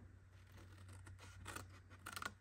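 Small craft scissors snipping cardstock: several faint, short snips.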